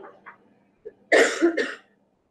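A person coughing twice in quick succession, about a second in.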